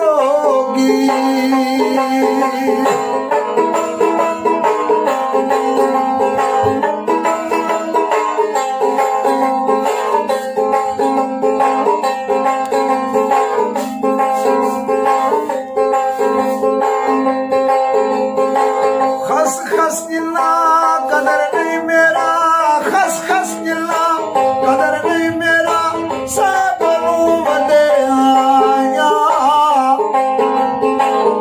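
A tumbi, the Punjabi one-stringed plucked gourd instrument, played in a steady repeating pattern, with a man singing over it, most plainly in the second half.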